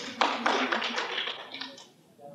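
Brief scattered applause from an audience, a quick run of hand claps that dies away near the end.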